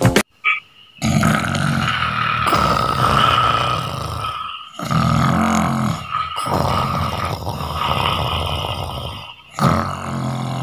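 A man snoring loudly in his sleep: about three long, drawn-out snores a few seconds each, with short pauses between them.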